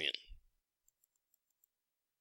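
A quick run of faint, light clicks as digits are entered into a computer calculator, about six small ticks in the second half.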